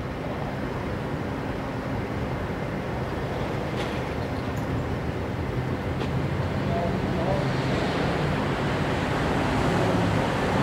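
Steady traffic and idling-engine noise, heard from inside a parked car. It grows slightly louder over the last few seconds as an SUV drives past close in front.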